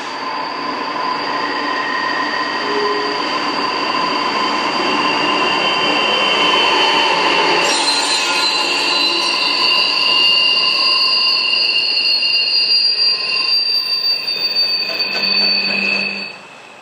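Empty coal train rolling past behind a pair of GE diesel locomotives, its wheels squealing in several steady high tones over the rumble of the cars. More high-pitched noise joins about eight seconds in as the locomotives pass close.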